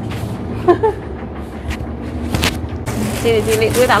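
A few short knocks over a steady low rumble, the loudest about two and a half seconds in, then a woman talking near the end.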